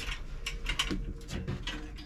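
Several short clicks and knocks as the battery compartment lid on a Toyotomi kerosene heater is snapped shut and the heater is turned around on the ground.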